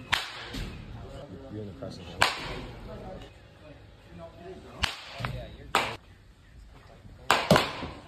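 Baseball bat hitting balls in a batting cage: six sharp cracks spaced a couple of seconds apart, two of them close together near the end.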